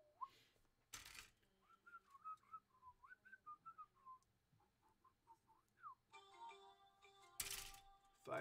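Faint whistling of a tune by a person: a string of short wavering notes, then a rising note. Two short bursts of noise break in, about a second in and near the end, the second being the loudest sound.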